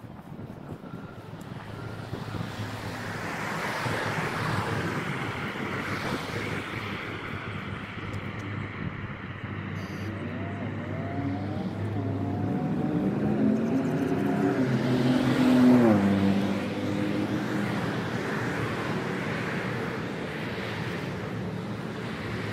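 A motor vehicle passing on the street: its engine grows louder, then drops sharply in pitch as it goes by about sixteen seconds in, over a steady wash of traffic noise.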